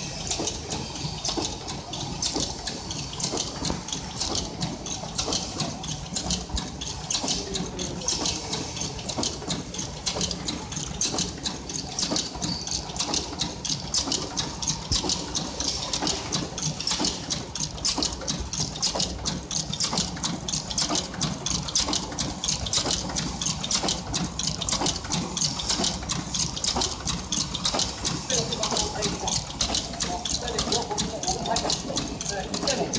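Automatic dry-cell battery shrink-sleeve packaging machine running steadily: a fast, even clatter of sharp mechanical clicks over a constant low hum.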